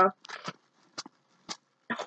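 A few short, sharp knocks as things are shaken out of a backpack, with a brief breathy vocal sound of effort early on.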